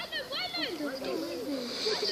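Unintelligible voices talking and calling out, some of them high-pitched, with a brief hiss near the end.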